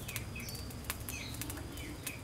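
Charcoal crackling and popping in a clay stove beneath a wire grill as fish are laid on it: sharp irregular clicks several times a second. Birds chirp briefly and repeatedly in the background.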